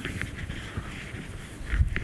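Faint shuffling and handling noise from a lecturer moving across to a laptop, with one dull low thump and a click about two seconds in.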